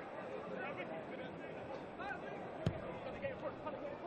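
Thin stadium ambience at a football match: a steady crowd hum with faint, distant shouts from players and spectators. About two-thirds of the way through comes one sharp thud of a football being kicked.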